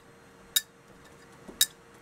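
Two sharp metallic clinks, about a second apart, from a small gas engine's flywheel being turned by hand.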